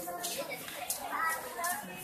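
Several young people's voices chattering at once in the background, with no clear words.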